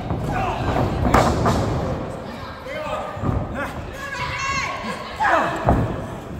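Thuds of pro-wrestling strikes and bodies hitting the ring canvas, one about a second in and two close together near the end, with people shouting in between.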